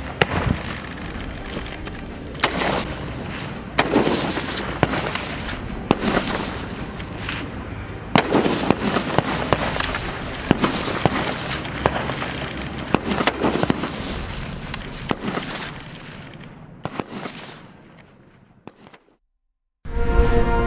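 Volleys of rifle fire from several AR-style carbines on a firing range: sharp shots at irregular intervals, often several close together, each trailing off in echo. The firing thins and fades away in the last few seconds.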